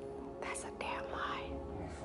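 A voice speaking very softly, close to a whisper, over quiet background music with steady held notes.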